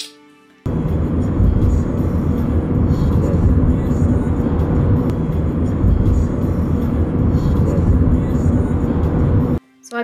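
Loud, steady low rumble of road and engine noise inside a moving car's cabin. It starts suddenly just under a second in and cuts off shortly before the end.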